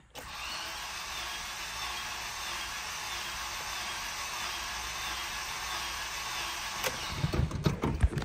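Starter motor cranking the 2006 Acura RSX's four-cylinder engine over steadily for a compression test, without it starting; it stops abruptly about seven seconds in, followed by a few small knocks. The engine has two cylinders holding zero compression.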